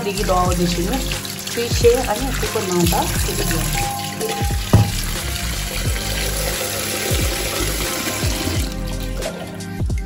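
Tap water running into a steel sink, splashing over potatoes being rubbed clean and then filling a steel pressure-cooker pot, under a background song with singing. A single sharp knock sounds about halfway through.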